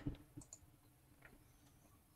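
Near silence with a few faint, short clicks in the first second and a half.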